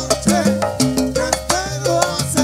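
Salsa orchestra playing live, an instrumental passage with a steady beat.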